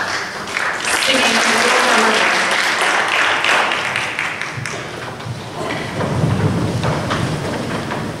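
Audience applauding, fading after a few seconds into the shuffling and thuds of a choir sitting down on wooden risers.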